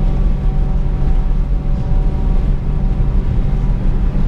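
Car cabin noise at steady highway cruising: a loud, even low drone of engine and road, with a faint steady engine hum above it.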